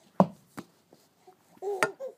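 A few sharp knocks of a bouncing ball, the loudest just after the start and another near the end. Near the end a baby breaks into a high-pitched squealing laugh.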